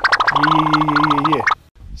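A man's voice holding a long, drawn-out "yeah" on one steady pitch with a fast rattling, gargling quality, about one and a half seconds long, cut off abruptly.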